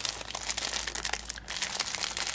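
Clear plastic bag crinkling and crackling in irregular bursts as a stuck card with loose sequins is worked out of it.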